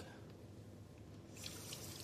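A bathroom tap turned on about one and a half seconds in, water running steadily into the sink as hands are rinsed.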